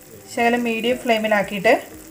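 A woman speaking over faint sizzling from a mushroom stir-fry frying in a pan.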